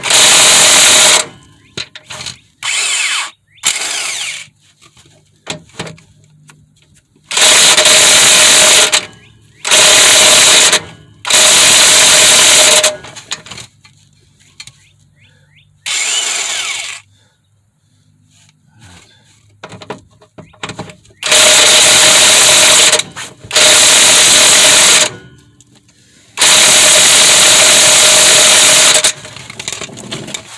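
Impact wrench hammering in about eight bursts of one to two seconds each on a seized control-arm bolt. The bolt is too tight to break loose.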